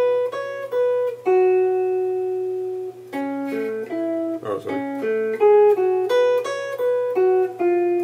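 Clean-toned archtop electric jazz guitar playing single-note phrases from an altered-scale line over F7 altered. One note is held for about a second and a half, then quicker notes follow, a few of them ringing together.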